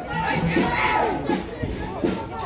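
Several people shouting and calling out at once, their voices overlapping.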